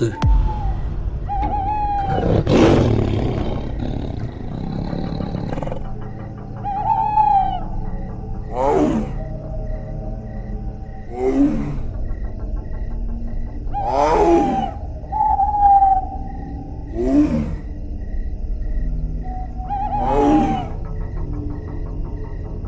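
Tiger roars, five of them about three seconds apart, each sliding down in pitch, over dark background music with a steady low drone. A loud swell of noise comes about two and a half seconds in.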